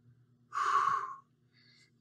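A man's single forceful exhale, hissing and lasting under a second, about half a second in: an exertion breath during a set of dumbbell front squats.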